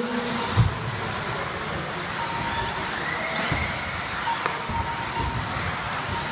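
Electric 4x4 RC buggies racing on an indoor carpet track: a steady mix of motor whine and tyre noise, echoing in a large hall, with a thin whine rising in pitch about three seconds in.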